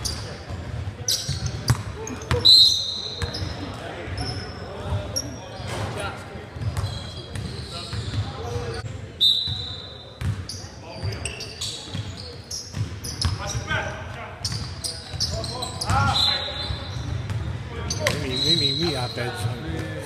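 Basketball game on a hardwood gym floor: the ball bouncing, sneakers squeaking in short high bursts, and players' indistinct voices, all echoing in the hall.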